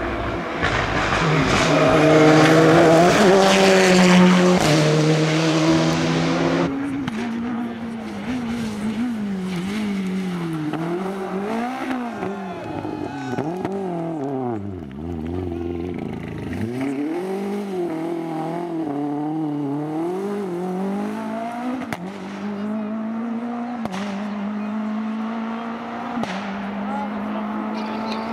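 Renault Clio rally car's four-cylinder engine at full throttle, loudest in the first six seconds, with sudden pitch drops at gear changes. It then revs up and down again and again as the car is driven hard through bends, and climbs steadily near the end.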